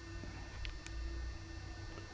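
Quiet workshop room tone: a low steady hum with a couple of faint clicks about halfway through.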